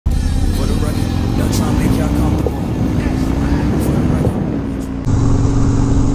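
Harley-Davidson motorcycle engine running with wind noise on a bike-mounted mic. About five seconds in the sound cuts to a steady, even engine hum.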